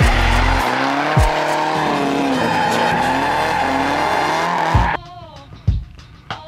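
Turbocharged Nissan S13 'Sil80' drift car sliding, its engine revving up and down over loud tyre squeal, mixed with a rap beat. The car sound cuts off suddenly about five seconds in, leaving only the music.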